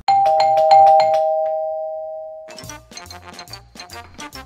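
Two-tone ding-dong doorbell chime, a higher note followed by a lower one, ringing out and fading over about two seconds. Light background music plays under it, and its rhythmic beat carries on after the chime dies away.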